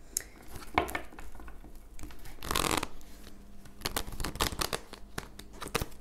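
A tarot deck being shuffled by hand: a run of short papery card flicks and taps, with one longer rustle of cards about two and a half seconds in.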